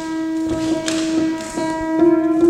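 A keyboard instrument holds one steady, unfading note with clear overtones, with a few light clicks over it.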